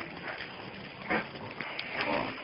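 Several dogs jostling at close quarters and making short calls, with one sharp, louder call a little after a second in.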